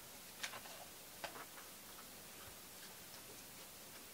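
Faint light taps and clicks of a cardboard strip being handled on a tabletop: two or three short ticks in the first second and a half, then quiet room tone.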